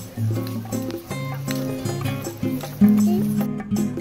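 Background music with sustained pitched notes over a bass line that changes every half second or so.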